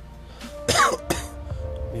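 A man coughs loudly once about a third of the way in, with a shorter cough right after it, over steady background music.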